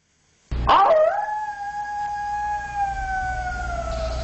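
A single long canine howl. It starts about half a second in with a quick rise in pitch, then is held and slowly sinks, over a low steady hum.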